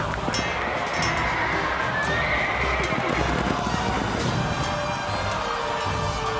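Background music with a horse whinnying over galloping hooves, a stampede sound effect.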